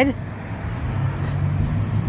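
Low, steady rumble of a motor vehicle, a little louder about halfway through.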